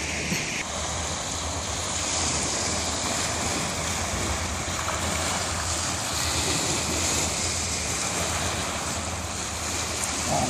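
Small waves breaking steadily on a sandy beach, heard as an even rush, with wind.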